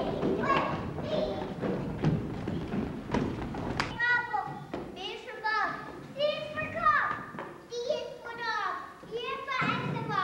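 Many children's and adults' voices chattering at once in a large hall, with scattered knocks and thumps. About four seconds in this gives way abruptly to clearer high-pitched young children's voices, one after another with short gaps.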